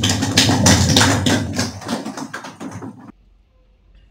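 Audience applauding, a dense patter of many hands clapping, which cuts off suddenly about three seconds in, leaving only faint room tone.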